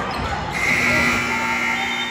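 Gymnasium scoreboard horn sounding a steady, loud tone from about half a second in, over gym noise of voices and a bouncing basketball; the clock has run out.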